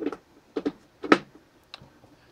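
Four or five sharp clicks and knocks as a mains plug is pushed into the AC outlet of a Vetomile EA150 portable power station and its front panel is pressed to switch the output on. The loudest knock comes about a second in.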